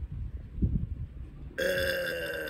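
A low rumble, then about one and a half seconds in a man's long, drawn-out hesitant "uhhh" starts and is held on one steady, slightly falling pitch, as he is caught off guard by a question.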